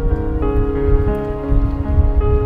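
Background music of held notes that change every half second or so, over a steady low rumbling noise.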